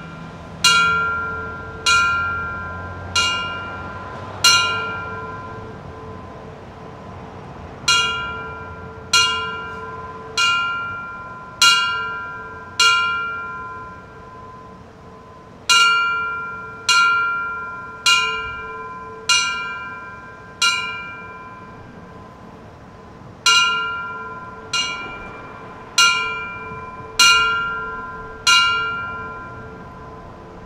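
Fire department bell struck as a final alarm: single clear ringing strikes in rounds of five, about a second apart, each left to ring out, with a pause of a few seconds between rounds. This is the fire service's traditional last-alarm signal honouring the dead.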